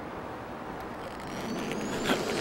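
Film soundtrack ambience: a steady rushing noise, with a thin high tone that rises slowly through the second half as the sound swells toward the end.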